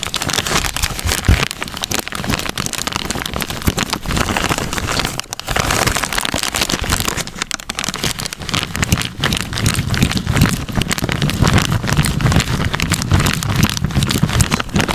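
A clear plastic bag full of thick mung bean porridge squeezed and kneaded by hands close to the microphone: dense, continuous crinkling and crackling of the plastic with the wet porridge squishing inside, broken by a short pause about five seconds in.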